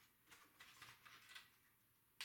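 Near silence, with a few faint rustles and taps of paper being handled.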